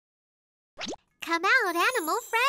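Silence, then a quick rising cartoon 'plop' sound effect just before the middle. After it comes a sing-song cartoon voice whose pitch wobbles up and down in even waves, as a children's song intro starts.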